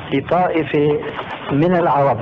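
Speech only: a man talking, his voice dull and muffled as on an old recording.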